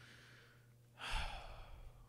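A man's sigh, a breath of air about a second long, starting about halfway through after a moment of near quiet.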